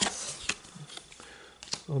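A hand rummaging in a cardboard box: a few light knocks against the cardboard with soft rustling of cardboard and packing paper in between.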